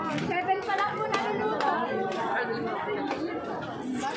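Chatter of many overlapping voices in a street crowd, with no other sound standing out.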